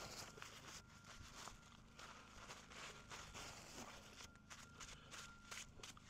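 Near silence: faint background noise with a few weak, soft ticks.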